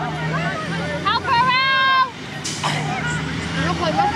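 Several players calling and shouting at once during a Ki-o-Rahi game, no clear words, with one long high-pitched shout about a second in.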